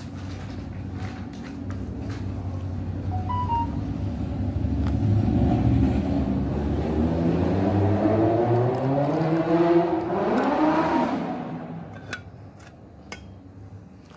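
A motor vehicle's engine passing by: a low rumble that swells, rises in pitch as it accelerates, then fades away about three-quarters of the way through.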